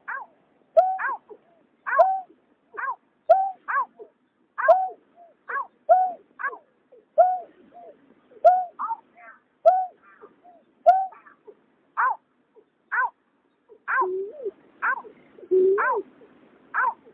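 Recorded calls of greater painted-snipe, a male and female pair: short downward-sliding notes repeated about once a second. From about 14 seconds in, lower hooting notes join them.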